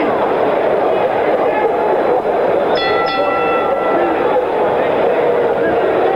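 Boxing arena crowd noise, a dense steady hubbub. About three seconds in, a steady horn-like tone starts twice in quick succession and holds for about a second and a half.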